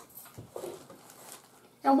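Faint rustling of soft white bread being torn into small pieces by hand over a bowl, with a soft knock about half a second in. A woman starts speaking near the end.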